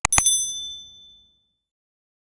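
Two quick mouse-click sound effects, then a high bell ding that rings out and fades over about a second and a half: the notification-bell sound effect of a subscribe-button animation.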